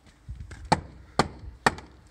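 Hammer striking a stuck metal door handle on a wooden door to knock it back into position: three sharp strikes about half a second apart.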